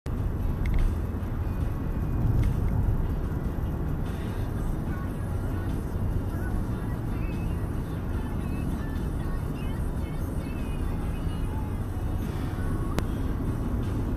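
Steady low road and engine rumble inside the cabin of a moving car, picked up by a dashcam, with faint music playing under it.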